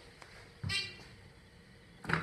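A short electronic beep from a Dover Impulse hydraulic elevator's fixtures, heard once, about two-thirds of a second in.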